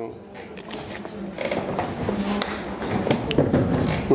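Quiet, indistinct talking away from the microphones, with a few sharp clicks and knocks.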